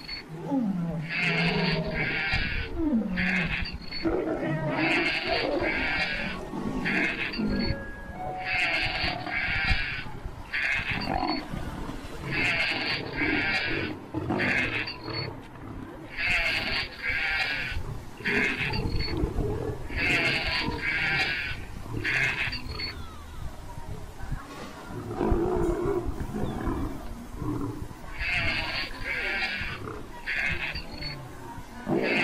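Lion growling and roaring in low, drawn-out calls, over a high-pitched pattern that repeats about every four seconds.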